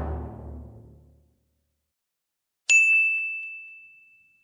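The tail of music fades out, then after a short silence comes a single bright ding sound effect, struck suddenly and ringing on one high tone as it fades away over about a second and a half.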